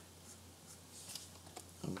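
Faint scratching of a pen stylus dragged across a graphics tablet during digital sculpting, with a couple of light ticks about a second and a half in; a man's voice begins a word at the very end.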